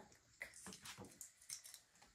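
Near silence with a few faint, short clicks and rustles: small handling noises of a Christmas ornament and its hook being fitted onto an artificial tree's branch.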